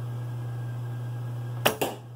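A traditional bow shot off the fingers: the string's sharp snap on release about one and a half seconds in, followed a split second later by a second sharp knock as the arrow strikes the target. A steady low hum runs underneath.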